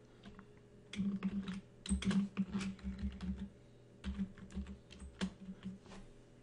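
Typing on a computer keyboard: three short runs of rapid key clicks.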